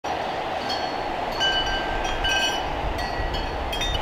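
Steady wind noise buffeting the microphone outdoors, a low rushing rumble, with a few brief thin high whistles over it.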